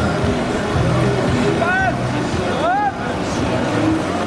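Whitewater rushing steadily over and below a river weir. Two short, high calls rise and fall in pitch, about one and a half seconds in and again near three seconds.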